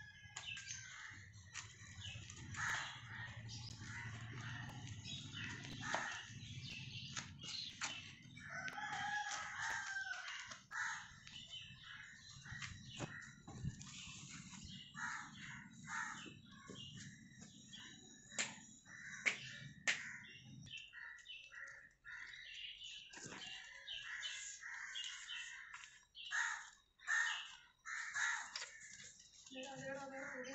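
Birds calling throughout, many short chirps and calls overlapping, with a low rumble underneath that stops about two-thirds of the way in.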